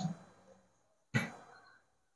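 A pause in a man's speech at a microphone: silence, broken a little past halfway by one short breath drawn into the microphone.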